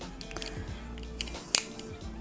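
A clear plastic figure stand being handled and fitted together, giving a few small sharp plastic clicks, the loudest about one and a half seconds in, over soft background music.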